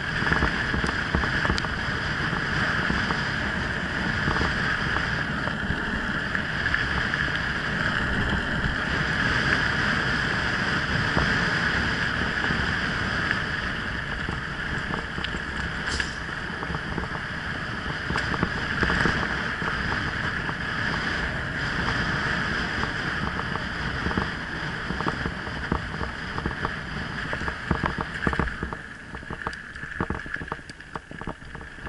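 Mountain bike riding down a dirt and gravel track: steady wind rush over the microphone, with tyre rumble and frequent rattles and knocks from bumps, which get busier near the end.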